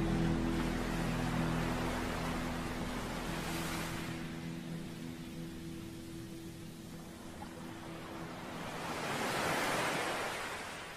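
Ocean-wave sound washing in twice, swelling about three seconds in and again near the end, while a held low music chord fades away underneath.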